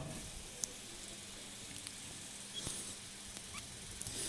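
Quiet room tone: a faint steady hiss and low hum, with a few soft clicks and a brief soft rustle.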